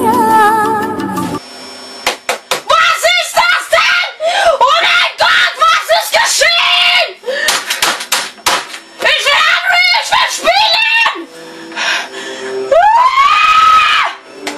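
A boy screaming and shouting in German in high, strained yells, mixed with many sharp slaps and knocks on a computer keyboard and desk. Near the end comes one long scream that rises and then holds. A Bollywood song plays for the first second or so and then cuts off.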